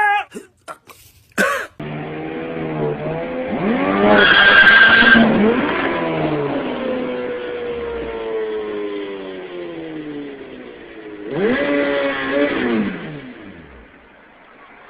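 A few short clicks, then a motorcycle engine revving up and down, its pitch swinging. A loud skid with a squeal comes about four seconds in, the pitch then slides down slowly, and there is another short rev near the end.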